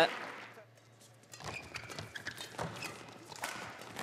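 Faint indoor badminton hall sound between commentary lines: nearly silent for about a second, then a low murmur of the hall with faint voices and scattered sharp taps and footfalls from the court.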